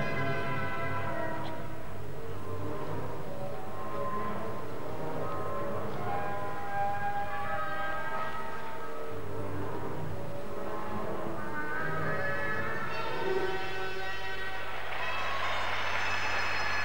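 Instrumental music for a figure skater's free programme, played over an ice arena's loudspeakers: slow, long-held chords that shift every second or two.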